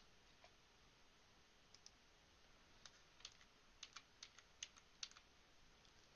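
Faint clicking of computer keyboard keys and a mouse: about a dozen separate, short clicks, sparse at first and coming more often in the second half, over near silence.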